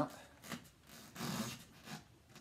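Hands handling a plastic toy blaster while shifting grip to aim: soft rubbing and rustling, with a single light click about half a second in.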